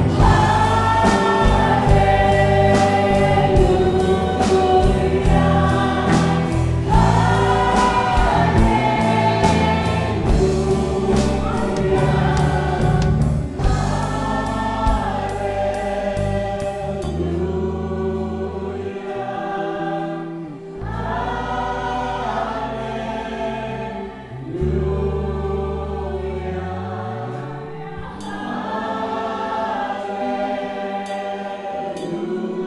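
A live worship band and several singers performing a gospel praise song: sung melody over keyboard, guitars, bass guitar and drum kit. A little past halfway the drums drop out and the song carries on more softly with voices, keyboard and bass.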